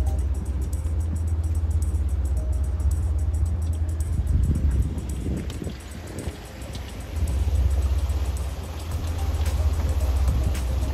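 Low, steady rumble of a motor boat's engine as it moves off the mooring, with music playing over it.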